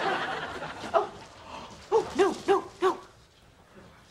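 Studio audience laughter dying away, then, about two seconds in, four short rising-and-falling vocal sounds in quick succession.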